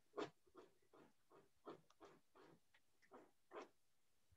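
A dog digging at a couch cushion: a faint, irregular run of short scraping sounds, about two or three a second.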